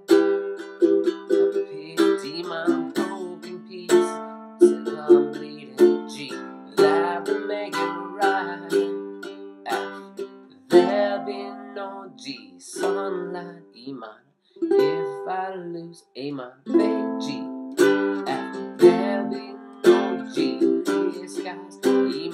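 Ukulele strummed in chords, with two short breaks in the second half.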